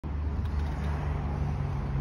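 A motor vehicle engine running steadily, a low even hum with no change in pitch.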